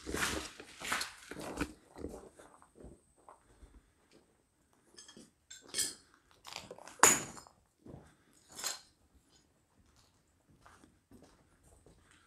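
Footsteps crunching over grit and broken plaster debris, with small clinks, in a run of steps for the first two seconds, then a few scattered single crunches, the loudest about seven seconds in.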